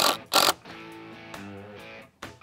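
Two short bursts from a cordless drill sinking a screw through the screed board into the wooden stake, in the first half second. Background guitar music follows.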